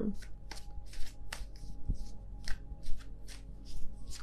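A tarot deck being shuffled by hand: a run of short, crisp card riffles and slaps, about three a second.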